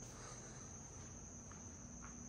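Faint, steady high-pitched trill of crickets, with a low hum underneath.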